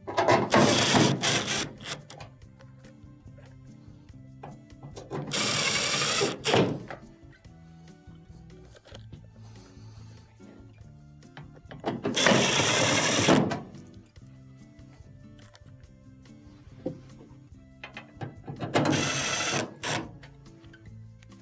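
A Makita cordless impact driver driving sheet-metal screws into a washer's front panel, four bursts of a second and a half to two seconds each, several seconds apart. Background music plays throughout.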